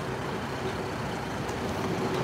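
A car driving along the street: a steady road-traffic rumble with no distinct events.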